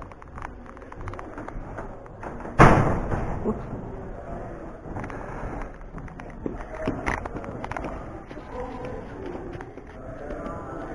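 A heavy entrance door swinging shut with one loud thud about two and a half seconds in, with footsteps and faint voices around it.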